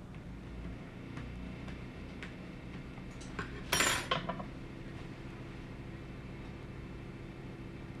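A metal fork clattering down onto a wooden table a little before halfway, after a few light clicks.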